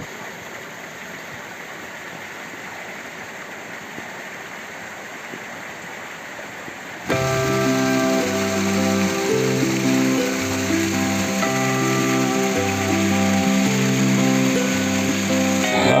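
Steady rush of hot-spring water running over stone. About seven seconds in, background music with a bass line changing notes about once a second starts suddenly over the water and is the loudest sound from then on.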